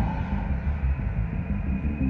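Live instrumental electronic prog rock in a quieter passage: a deep, pulsing low rumble carries the music while the higher keyboard tones drop away at the start, and a steady higher tone comes back in near the end.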